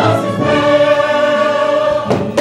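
Stage chorus singing with musical accompaniment, moving into one long held final chord about half a second in that cuts off abruptly at the end.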